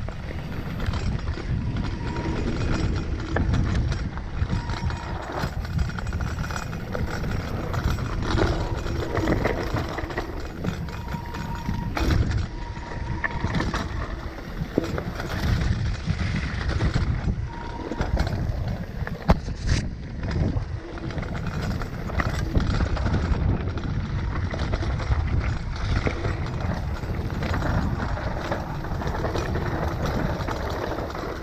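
Mountain bike rolling fast downhill over a rough dirt and stony trail: continuous tyre noise and rumble with scattered knocks and clatter from the bike as it hits stones and roots, a couple of sharper knocks partway through.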